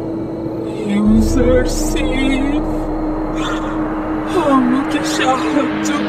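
Dark soundtrack music: a held low drone, a deep rumbling hit about a second in, and wavering, wordless voice-like sounds over it.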